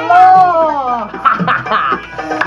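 A high voice giving one long, held cry of excitement lasting about a second, its pitch rising and then falling away, followed by shorter excited vocal sounds.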